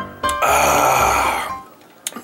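A man lets out a loud, throaty breath after a gulp of sweet iced tea, lasting about a second and trailing off.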